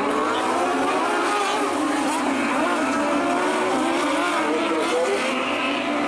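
A pack of 600cc micro sprint cars racing on a dirt oval. Their high-revving motorcycle engines run together as many overlapping pitches, rising and falling through the turn.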